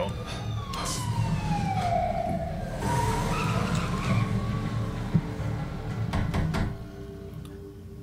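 A siren wailing on a film soundtrack, its pitch sliding slowly down and then rising and falling again, over a steady low rumble.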